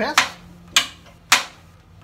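Feed-roller engagement lever of a Holzmann HOB 305 Pro planer-thicknesser, worked by hand, knocking metal on metal against the housing edge three times, about half a second apart. The lever has a little play and knocks against the metal at its upper end.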